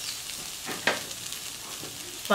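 Sauce-coated mushrooms sizzling steadily in a stainless steel wok, with a couple of short ticks just before a second in.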